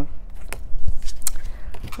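Tarot cards being shuffled by hand, with cards dropping onto the table: a few short taps and flicks, the loudest a soft thump about a second in.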